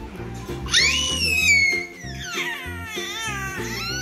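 A baby's high-pitched squeals: a loud, long one that slowly falls in pitch about a second in, then shorter squeals that swoop up and down. Background music with a steady beat plays underneath.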